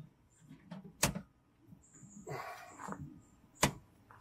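Two sharp clicks about two and a half seconds apart, with faint handling noise between, as a stiff hose fitting and pressure gauge on an RV water filter housing are worked by hand.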